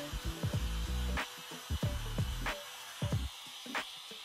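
Compact Bosch palm router running with a shallow bit, etching lines into a wood board. It sits low under background music with a regular beat.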